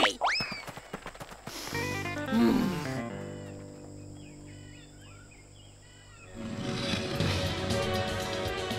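Cartoon episode soundtrack: background score with sound effects. There is a quick rising sweep at the start, held music chords with a sliding drop in pitch about two seconds in, faint high chirps in a quieter middle stretch, and a louder swell of music near the end.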